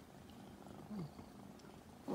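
Tabby-and-white kitten purring faintly and steadily, with a brief soft sound about a second in.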